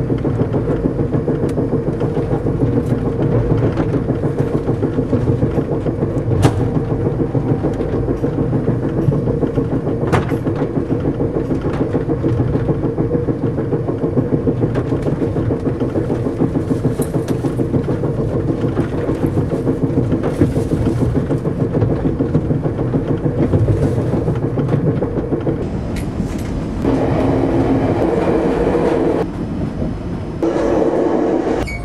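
Passenger train running noise heard inside a sleeper car: a steady low rumble with occasional sharp clicks from the wheels and car. Near the end it turns louder for a couple of seconds, with a droning tone.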